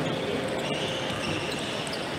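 A table tennis ball ticking sharply a couple of times, over the steady murmur of voices in a large sports hall.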